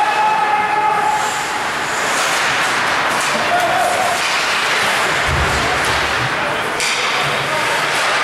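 Hockey arena din during play: spectators talking and skates on the ice, a steady wash of noise. A held tone ends about a second in, and a sharp knock comes near the end.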